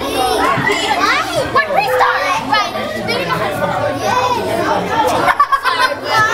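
Several girls talking over one another in lively overlapping chatter.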